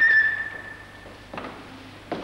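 A door squeaks once at the start: a short high steady squeal that fades away over about a second, followed by a soft knock.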